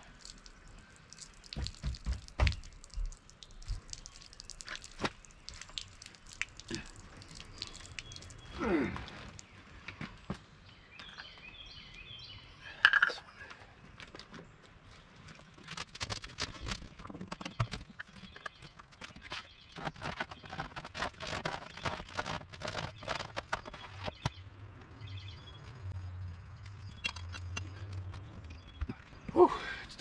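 RV sewer hose and its plastic fittings being handled: scattered clicks, knocks and rustles as the hose is uncoupled from the trailer's tank outlet and lifted, with a denser patch of handling noise about halfway through.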